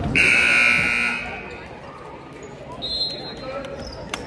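Gym scoreboard horn sounding once, a loud steady blare lasting about a second, followed about three seconds in by a short, fainter high referee's whistle.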